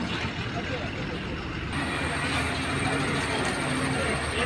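Roadside traffic noise on a highway: road vehicles running, with people's voices in the background. The noise grows a little fuller a little under halfway through.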